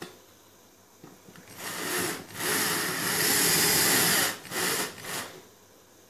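Cordless drill-driver driving a faceplate screw into a switched socket's box: a short spin, then a steady run of about two seconds, then two brief bursts near the end as the screw is seated.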